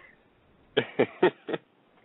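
A person laughing briefly: four short pulses about a quarter of a second apart, after a short pause.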